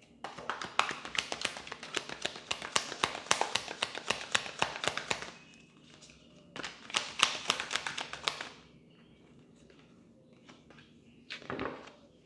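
Tarot deck being shuffled by hand: a rapid run of card flicks and taps for about five seconds, a short pause, then a second run of about two seconds. A brief soft rustle comes near the end.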